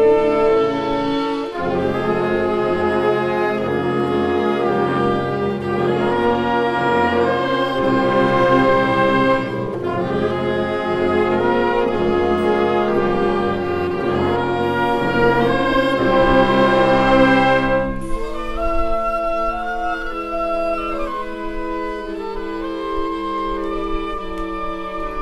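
Wind band of clarinets, saxophones and brass playing a full, loud passage together. About eighteen seconds in the low brass drops out and a lighter, higher passage carries on.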